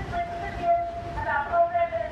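A group of protesters singing together in long held notes that shift pitch about a second in.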